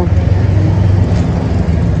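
A motor vehicle engine running, heard as a steady low hum.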